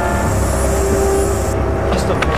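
Soundtrack drone: a low rumble with steady held tones, under a high hiss that cuts off suddenly about one and a half seconds in.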